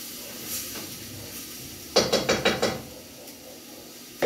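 Metal cookware on a gas stove clattering: a quick run of five or six knocks about two seconds in as a pot or its utensil is handled, over a low steady hiss.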